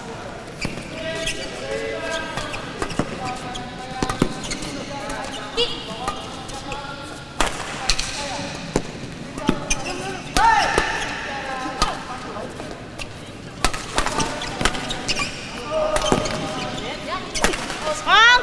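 Badminton rackets striking a shuttlecock in a rally: sharp pops at irregular intervals over a background of voices in a large sports hall.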